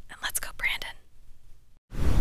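A woman's voice speaking a few soft, breathy words in the first second, then a faint low hum. A loud burst of sound starts at the very end.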